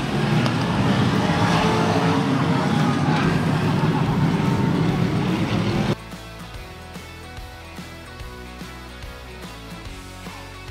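Sport mod dirt-track race cars running at speed, a loud engine roar, for about six seconds. It then cuts off suddenly to quieter background music.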